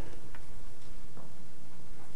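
Steady room tone through the sermon's microphone: a low hum and hiss with a couple of faint ticks.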